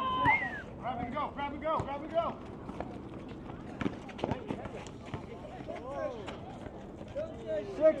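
Players shouting to each other during a pickup basketball game on an outdoor concrete court. Running footsteps and a few sharp knocks, from the ball and shoes on the concrete, come about halfway through.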